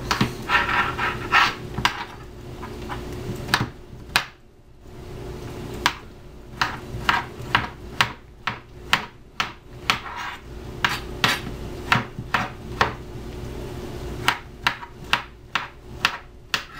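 Kitchen knife chopping peeled raw potatoes into cubes on a plastic cutting board: a run of sharp, irregular knocks of the blade on the board, roughly two a second, with a brief pause about four seconds in.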